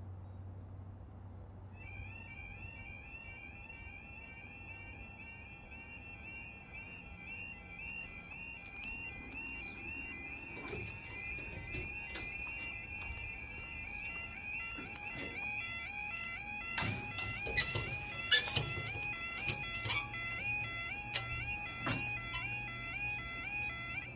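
UK level crossing audible warning alarm (the 'yodel') starting about two seconds in, a rapidly repeating warbling two-tone wail that sounds while the barriers lower, signalling a train approaching. Several sharp knocks come in the last third, louder than the alarm.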